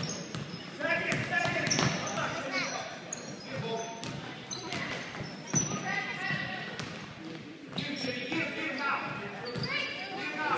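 Youth basketball game in a gym: a basketball bouncing on the hardwood court, with players and spectators calling out over it.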